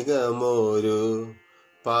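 A man singing Carnatic swara syllables (sa, ri, ga, ma, pa) in a slow wavering melody in raga Anandabhairavi. He breaks off briefly near the end and then starts the next phrase.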